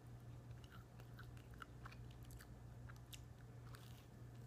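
Faint crunching of a person biting and chewing a slice of dry toast, small crisp crunches scattered irregularly through, over a low steady hum.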